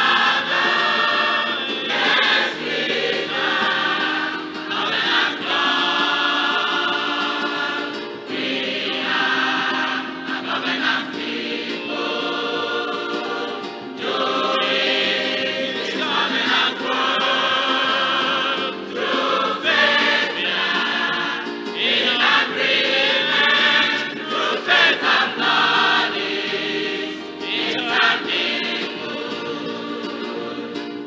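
Large mixed choir of women and men singing a gospel song in harmony, in sung phrases a few seconds long with brief breaks between lines.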